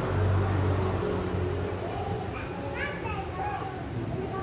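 Children's voices in the background, with brief high-pitched calls about two to three seconds in, over a low hum in the first second.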